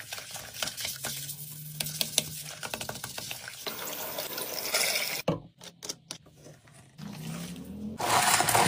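Water splashing and churning in a toilet bowl as it is scrubbed with a toilet brush, with small clicks of the brush against the porcelain. The sound cuts off suddenly about five seconds in, leaving scattered clicks and a quieter stretch.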